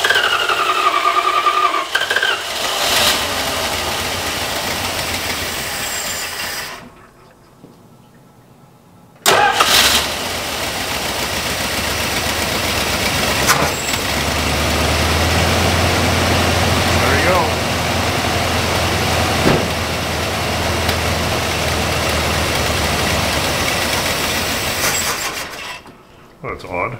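Dodge truck's 318 V8, fitted with a new aftermarket four-barrel carburettor, running, then dying about seven seconds in; it is restarted about two seconds later and runs steadily until it stalls again just before the end. The stalling is taken for fuel starvation: it may have run out of fuel, with the fuel pump perhaps not filling the carburettor bowl.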